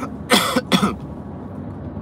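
A man coughs twice in quick succession, a short burst each, over the steady low rumble of a moving car's cabin.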